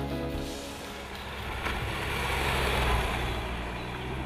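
Škoda Superb driving past: engine and tyre noise on a rough road surface swell to a peak about three seconds in, then ease off as the car goes by. Background music fades out in the first half second.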